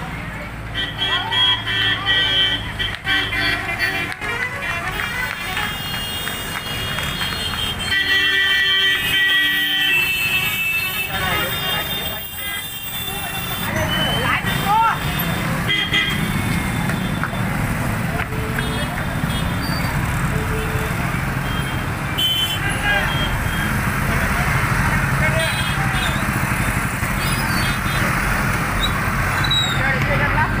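Busy road traffic: engines running steadily, including a tractor hauling a long train of loaded sugarcane trolleys and motorcycles, with vehicle horns held in two spells, about a second in and again around eight seconds in, over the voices of a crowd.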